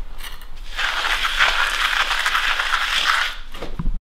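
Scrubbing a concrete floor by hand: a steady scraping rub that starts just under a second in and stops shortly before the end.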